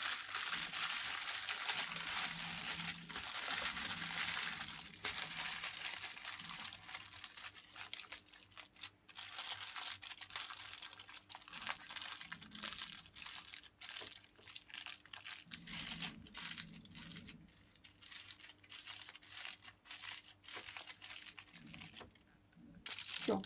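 Aluminium foil crinkling as hands fold and crimp its edges shut around a packet. The first few seconds hold dense, continuous rustling, then irregular separate crackles.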